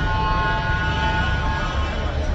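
A vehicle engine running with a low rumble, with several steady, held tones over it.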